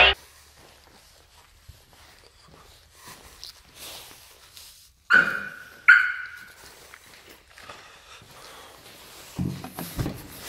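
A dog barking twice, about a second apart; these two barks are the loudest sounds in an otherwise quiet stretch.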